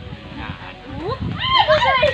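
Low scuffling noise, then a high, wavering cry that rises and falls in pitch through the last second.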